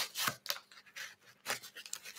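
An ultralight fishing rod being slid into a cardboard tube: a few short rubs and light knocks of the rod against the tube.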